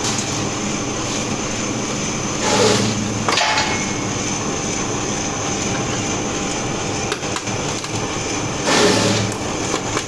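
Commercial strip-cut paper shredder running with a steady motor hum, cutting paper into strips; the shredding gets louder twice, about two and a half seconds in and again shortly before the end, as sheets are fed through.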